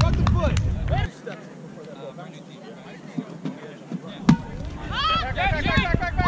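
Players shouting across an open field, with wind rumbling on the microphone. It goes quieter for a few seconds, then a single sharp thud, the loudest sound, comes about four seconds in, and the shouting picks up again.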